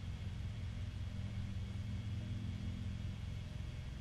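Steady low hum of background room tone, several steady low tones under a faint hiss, unchanging throughout.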